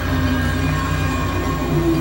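Experimental electronic synthesizer drone: a dense, steady low rumble with sustained tones held over it, a higher tone entering partway through, giving a train-like, industrial texture.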